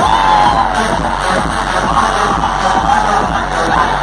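Electronic dance music from a DJ set, played loud over a festival sound system, with deep bass coming in right at the start. A crowd can be heard shouting over it.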